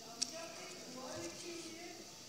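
Faint murmured voices in a hall, with one sharp click about a quarter second in.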